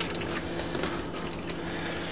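A steady low hum with a few faint, small clicks and taps, like hands and tools being handled close by.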